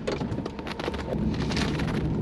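Car cabin noise while driving: a steady low rumble from the road and engine, with a rapid scatter of small crackles and ticks over it.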